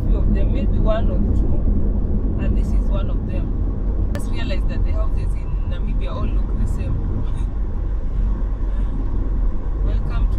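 Moving car's cabin with a steady low road-and-engine rumble, and people talking quietly in the background.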